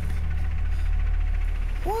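Low, steady drone of a drama's background music score, with a deep sustained bass.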